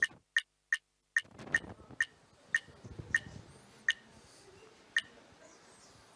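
Tick sound effect of an AhaSlides spinner wheel slowing to a stop: about ten sharp ticks that come ever further apart, the last about five seconds in, as the wheel comes to rest.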